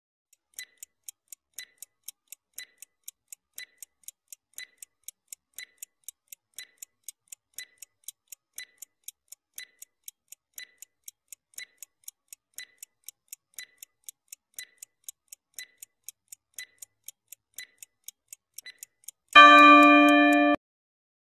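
Clock-ticking countdown sound effect for a quiz timer: quiet, even ticks, several a second, with a stronger tick each second. About a second before the end, a loud, steady-pitched tone sounds.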